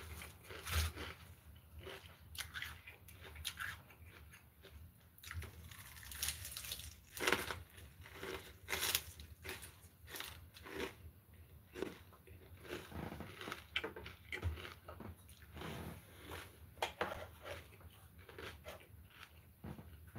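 A person chewing mouthfuls of crisp lettuce salad, with irregular crunches throughout.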